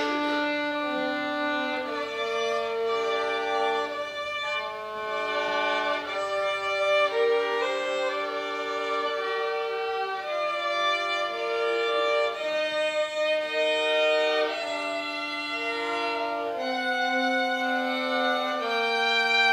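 A small ensemble of violins playing together: long held notes in several overlapping parts, moving from note to note smoothly.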